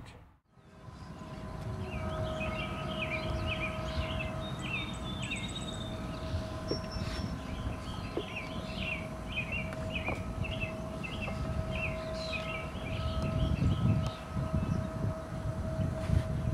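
A bird singing repeated short chirping phrases over a steady distant hum, with wind rumbling on the microphone, the rumble stronger near the end.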